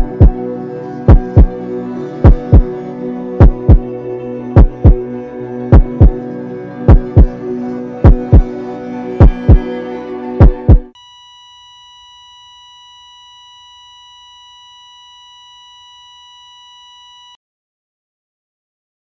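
Heartbeat sound effect, paired thumps about once a second over a held music chord, stopping about eleven seconds in. A steady electronic beep like a heart monitor's flatline follows, holds for about six seconds and cuts off suddenly.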